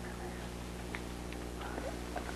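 Room tone in a pause between speech: a steady low electrical hum with a few faint ticks, and a faint voice-like murmur near the end.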